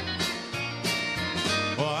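Country-and-western band playing a short instrumental link between sung lines, with electric guitar over a stepping bass line.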